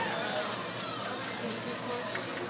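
Indistinct voices talking, with scattered small knocks; no music is playing.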